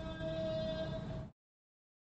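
A faint steady hum-like tone over low background noise, which cuts off abruptly about a second in and leaves dead digital silence: the stream's audio has been muted.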